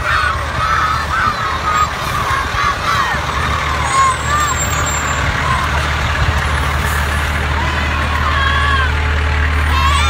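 Fire-rescue truck's engine running steadily as it passes close, the low rumble growing louder in the second half. Children riding on the truck's roof shout and call out over it.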